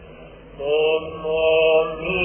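A male cantor chants a Byzantine hymn in the plagal fourth mode. After a soft start, the voice comes in about half a second in and holds long notes. The old recording sounds muffled, with the highs cut off.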